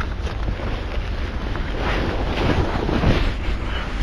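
Wind buffeting the microphone: loud, rumbling noise that swells about two to three seconds in.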